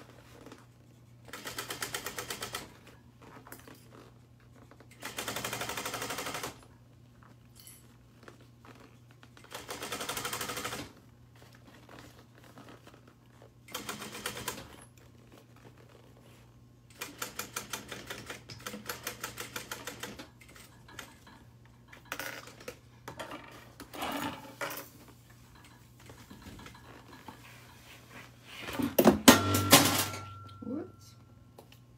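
Industrial lockstitch sewing machine topstitching a handbag in short runs: about eight bursts of rapid, even needle strokes, each lasting one to three seconds with pauses between. The loudest run comes near the end, and a steady low hum from the machine carries on between runs.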